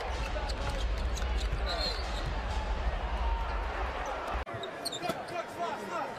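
Basketball game arena sound: a ball dribbling on the hardwood court amid steady crowd noise, with short sharp squeaks. The sound changes abruptly a little over four seconds in, where the low rumble drops away.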